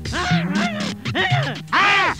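A man's comic, wordless vocal sounds in a run of short syllables, each rising and falling in pitch, over background music.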